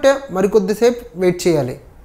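Only speech: a man talking steadily in Telugu, with a brief pause near the end.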